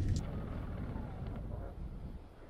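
Faint low rumble in the cab of the BRO electric all-terrain vehicle as it stands still on an uphill slope with the accelerator released, its electric motors holding it in place under load.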